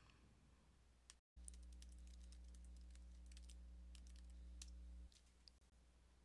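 Faint keystrokes on a computer keyboard, a quick irregular run of light clicks, over a low steady hum that comes in about a second and a half in and stops about five seconds in.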